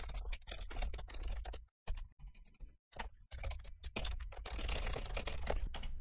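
Typing on a computer keyboard: a rapid, uneven run of keystrokes entering a line of code, broken by two short pauses in the first half.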